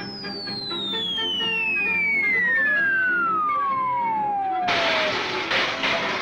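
A long falling-whistle sound effect, the classic sound of something dropping out of the sky: one tone gliding steadily down in pitch for about five seconds. Near the end a sudden loud crash cuts it off. Orchestral music plays under both.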